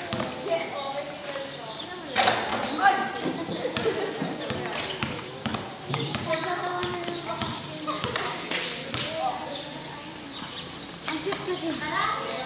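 A basketball bouncing on a concrete court, with a few sharp bounces, the loudest about two seconds in, amid players' shouts and chatter.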